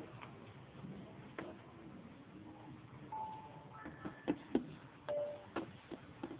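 A quiet room with a handful of short, sharp clicks scattered through it, two of them in quick succession just past the middle. A few brief, faint held tones sound between the clicks.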